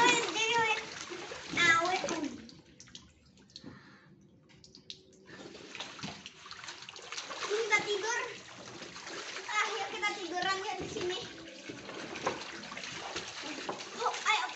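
Young children splashing and kicking in a shallow paddling pool, water sloshing, with their high voices calling out now and then. There is a quieter stretch about three to five seconds in.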